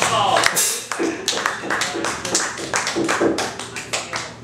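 The music ends on a falling glide in the first half-second, then a few people clap sparsely and irregularly for about three seconds, the claps thinning out near the end, with voices among them.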